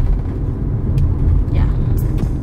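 Steady low rumble of a car driving, heard from inside the cabin, with a person's voice briefly over it.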